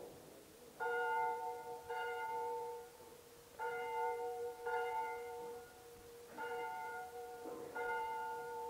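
Church bells ringing: six strokes of the same pitch, falling in pairs about a second apart, each stroke ringing on for about a second.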